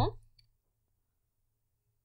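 The last syllable of a woman's speech, a faint click, then silence.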